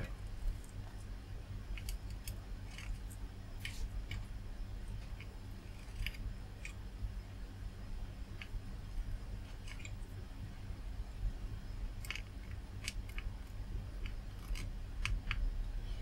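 Soldering iron tip working low-melt Chip Quik solder along a chip's pins on a circuit board: faint scattered ticks and scrapes over a steady low electrical hum.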